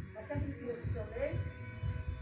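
A person speaking, the words indistinct.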